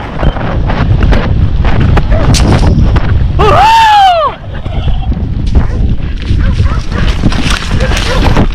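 A horse galloping downhill over dry ground, with heavy wind rushing on the microphone. About three and a half seconds in, a rider gives one long yell that rises and then falls in pitch.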